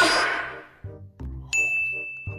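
A bell-like ding sound effect about one and a half seconds in, ringing on as one steady high tone, over background music with a low beat. A noisy crash sound fades out in the first half-second.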